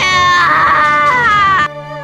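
A high-pitched wavering voice, sustained and cry-like, over background music, cut off abruptly near the end, leaving a held musical chord that fades.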